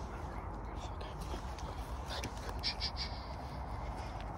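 A quick run of three short, high bird calls near the end, over a steady outdoor background with a low rumble.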